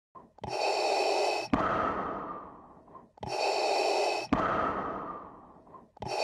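Darth Vader's respirator breathing sound effect, two full mechanical breaths. Each is a hissing draw of about a second with a whistling edge, then a click and a longer hiss that fades away. A third breath begins at the very end.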